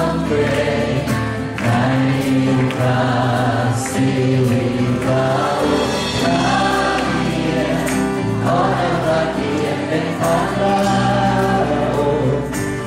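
Live worship song: a male lead singer accompanying himself on acoustic guitar, with other voices joining in, sung continuously.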